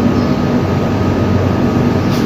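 Steady, loud background drone: a low hum with an even hiss over it and a faint steady higher tone.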